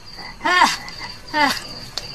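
Frogs croaking in short calls, two about a second apart, over a steady high chirping of insects.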